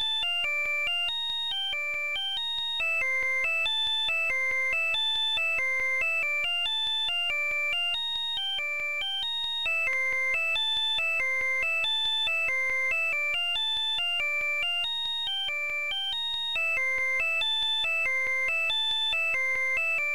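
A bell-like synth preset built in FL Studio's 3x Osc plays a looped melody of quick, evenly spaced notes. The same phrase comes round about every seven seconds.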